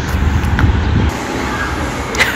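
Wind buffeting the microphone, a loud low rumble that cuts off abruptly about a second in, leaving a quieter steady street background noise.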